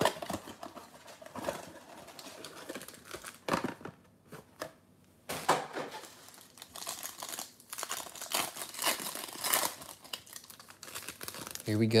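A hockey card blaster box and its foil card pack being opened by hand: irregular crinkling and tearing of cardboard and wrapper, coming in louder spurts several times.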